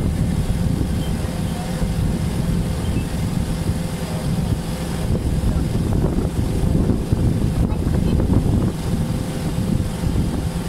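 Water bus engine running with a steady low drone, heard from the open passenger deck and mixed with wind and water noise.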